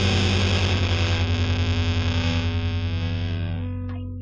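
A distorted electric guitar chord held and left ringing, wavering with a fast even pulse, thinning and fading toward the end.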